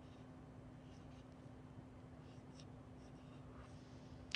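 Near silence: faint, scattered strokes of a marker writing on a whiteboard, over a steady low hum.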